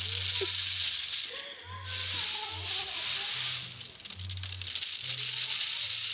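Dried coffee beans trickling from a hand into a plastic bag, a steady rattling hiss that breaks off briefly about a second and a half in, then starts again.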